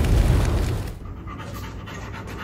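The low, noisy fire-and-boom sound effect fades out over the first second. Then a hound dog pants quickly.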